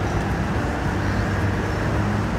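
City street traffic: a steady low rumble of vehicle engines passing close by.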